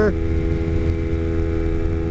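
Kawasaki Ninja 250R's parallel-twin engine running steadily at freeway cruising speed, its pitch holding level.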